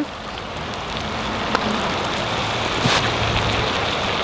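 Butter melting and sizzling in a small cast-iron skillet over a camp stove burner: a steady crackling hiss that swells slightly in the first second, then holds.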